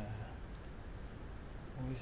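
Computer mouse button clicked, a quick pair of sharp clicks about half a second in.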